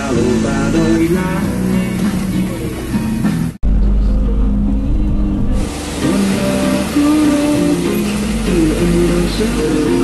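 Music with a melody playing throughout. After a brief cut about three and a half seconds in, the low rumble of a bus engine and road noise runs beneath it.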